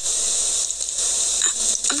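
A steady hiss, even and unbroken, with no speech over it.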